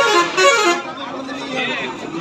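Two short, loud horn-like toots in quick succession, then the chatter of a busy crowd.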